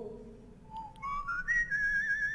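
A person whistling a melody on an old black-and-white film soundtrack: after a brief pause, a few notes climb step by step, then a long high note is held with vibrato.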